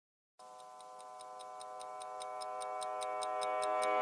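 Song intro from the recorded backing track: a held synth chord swells in steadily, with a high clock-like ticking about five times a second over it. No bass guitar is heard yet.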